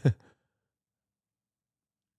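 Silence, broken only by the last moment of a short vocal sound at the very start.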